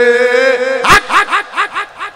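A man's voice holds one long sung note, then breaks off with a sharp burst about a second in into a rapid string of short rising yelps, about seven a second, that weaken toward the end. This is a comic vocal effect that PANN takes for a dog.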